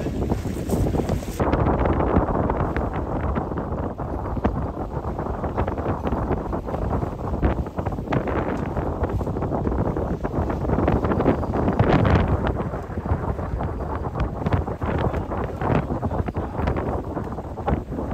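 Loud, continuous wind buffeting the microphone over the rush of water around a sailing catamaran under way.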